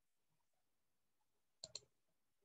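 Near silence, then two quick clicks of a computer mouse a little before the end.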